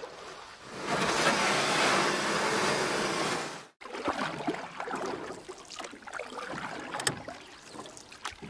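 Water splashing and sloshing as people wade through shallow muddy water, with a louder steady rush for about three seconds that cuts off suddenly, then scattered small splashes and one sharper splash near the end.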